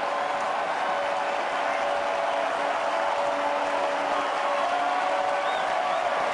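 Stadium crowd cheering and applauding a goal, a steady even roar with a held note running through it.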